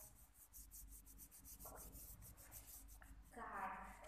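Fingertips rubbing quickly back and forth over a small card: a faint, rapid rasping made of many short strokes.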